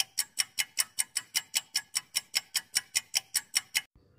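Clock-style ticking sound effect of a quiz countdown timer: sharp, evenly spaced ticks, about five a second, stopping near the end.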